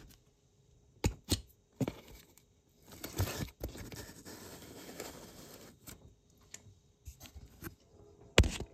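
Hand handling a cardboard model elevator shaft lined with painter's tape: a few sharp light knocks in the first two seconds, then a rough rustling, tearing noise of cardboard and tape for about three seconds.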